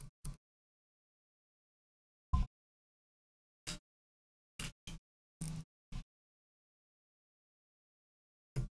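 Short scrapes of a metal blade on a laptop circuit board, scratching away the green solder mask. There are about eight brief strokes with dead silence between them, and the loudest comes about two and a half seconds in.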